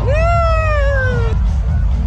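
Loud dance music with heavy bass. Near the start, a high-pitched wailing vocal cry, about a second long, jumps up quickly and then slides slowly down over it.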